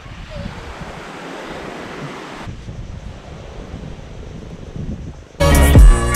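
Steady rush of surf and wind on the microphone, which turns duller and quieter about two and a half seconds in. Loud music with a beat comes in near the end.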